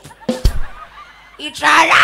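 A Thai shadow-puppet performer's voice shouting a loud insult about one and a half seconds in. It follows a short spoken syllable and a single sharp knock.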